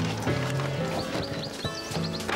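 Background music with changing sustained notes, and a run of short rising high notes in the second half.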